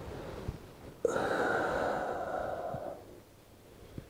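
A man's deep breath out during a slow floor exercise, starting abruptly about a second in and lasting about two seconds.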